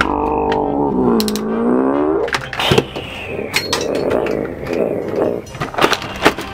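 A drawn-out, deep character laugh whose pitch dips and then rises over about two seconds, followed by several sharp knocks and a stretch of clatter.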